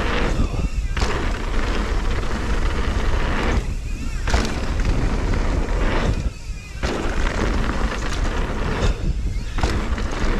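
Mountain bike running fast down a dirt singletrack: tyres rumbling and the bike rattling over bumps, with heavy wind buffeting on the camera's microphone. The noise eases briefly a few times, most clearly about six and a half seconds in.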